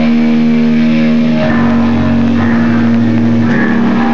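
Distorted electric guitars holding sustained, ringing chords without drums, the notes changing about every second.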